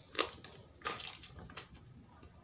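Handling noise close to the microphone: a few sharp crackles and knocks, four in two seconds, as things are moved about while a book is being got ready.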